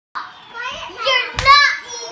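A young boy's high-pitched voice calling out in short bursts, with one sharp impact, a clap or stomp, about one and a half seconds in.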